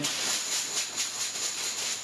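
A hand rummaging in a fabric draw bag full of numbered draw tokens, making a continuous rustle and rattle of cloth and tokens.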